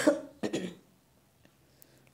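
A person coughing twice in quick succession, the first cough louder, the second about half a second later.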